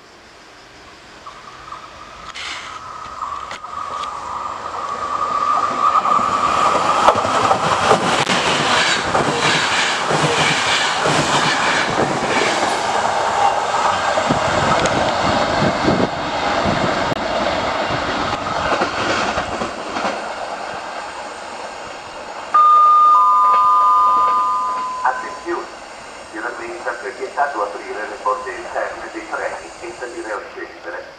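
InterCity train, hauled by an E464 electric locomotive, running through the station without stopping. The rumble and clatter of the locomotive and coaches builds over several seconds, stays loud for about fifteen seconds, then fades as the train draws away. Near the end a two-note electronic tone sounds, the second note lower, and a voice follows over a loudspeaker.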